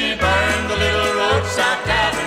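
1960s country band recording playing through a short gap between sung lines. Bass notes fall about twice a second under sustained melody lines.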